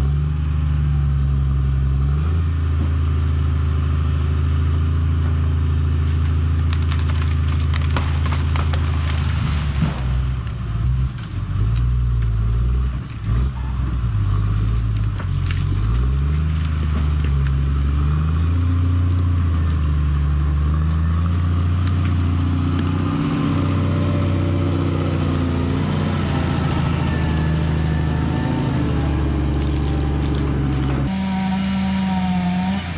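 Diesel engine of a wheeled grapple skidder running hard as the machine is driven through brush, its pitch dropping and rising several times as it is throttled. A few sharp cracks come about eight to ten seconds in.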